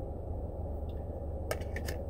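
Steady low hum of a car cabin, with a few light clicks about one and a half seconds in from tarot cards being handled.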